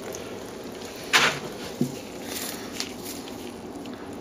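Faint handling of a wet, thin steel clock chain in a plastic-gloved hand, links shifting against each other and the glove, with one short rustle about a second in over steady room hiss.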